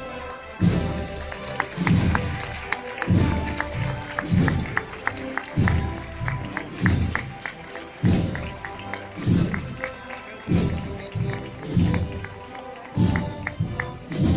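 Procession band playing a slow Holy Week march, a deep drum stroke marking the beat about every 1.2 seconds under the melody.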